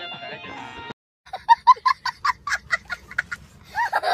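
A song ends abruptly a second in, then after a brief gap a child breaks into rapid, high cackling laughter, about five short bursts a second.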